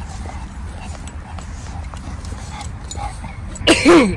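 Steady low rumble of an outdoor microphone, then near the end a short, loud vocal sound falling in pitch.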